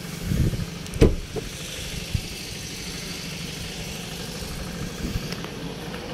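A steady low hum with a few knocks and thumps over it, the sharpest knock about a second in.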